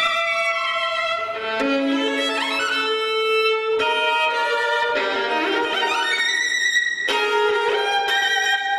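Solo violin playing a concerto passage, held notes with vibrato alternating with quick sliding shifts up and down the fingerboard. It is the passage the player calls a really uncomfortable spot.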